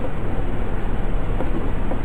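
Steady rumbling background noise, heaviest in the low end, with no speech over it.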